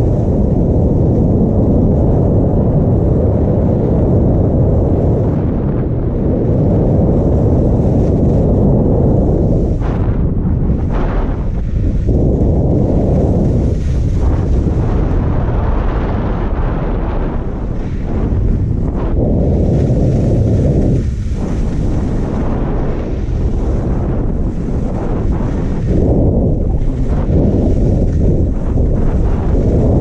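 Wind buffeting a GoPro Hero5 Black's microphone while skiing downhill at about 25–30 km/h: a loud, steady low rumble. The hiss of skis sliding on packed snow comes and goes over it.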